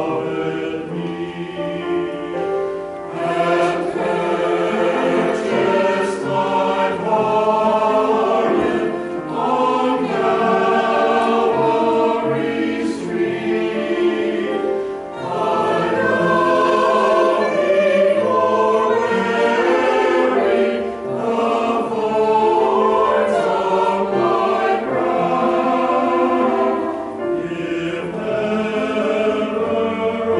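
Mixed church choir of men's and women's voices singing an anthem together, in long phrases with short breaks about every six seconds.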